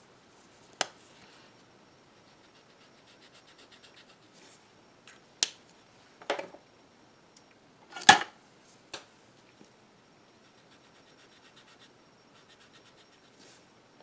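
Brush-tip alcohol markers stroked back and forth on paper, a faint rapid scratching, broken by several sharp clicks and taps from handling the markers and their caps, the loudest about eight seconds in.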